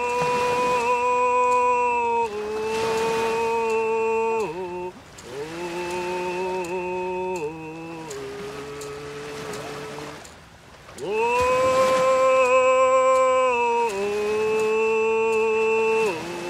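A man singing a Coast Salish remembrance song, unaccompanied, in long held notes that slide down at the end of each phrase. After a short breath about ten seconds in, the phrase begins again, loudest just after.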